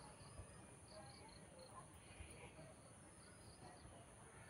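Near silence with faint insect chirping: short high chirps repeating over a thin, steady high-pitched trill.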